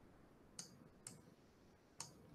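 Near silence, with two faint short clicks about half a second apart.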